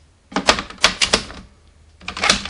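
A toy Gaia Memory is pushed into the plastic slot of a DX Accel Driver belt, giving a quick run of about five sharp plastic clicks about half a second in.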